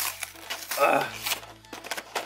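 Foil Pokémon booster packs rustling and tapping onto a table as they are tipped out of a cardboard collection box, a run of short clicks and light thuds.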